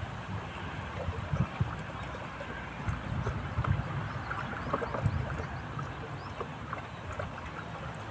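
Sugar water sloshing and swishing in a plastic bucket as it is stirred with a wooden stick, with uneven low thuds.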